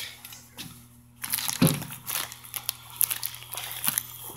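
Plastic wrap on a roll of vinyl crinkling and crackling irregularly as a hand pushes it aside to reach the label, starting about a second in, with one dull thump shortly after.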